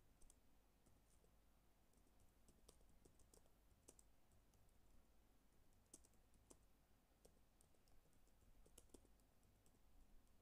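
Faint, irregular key clicks of typing on a computer keyboard.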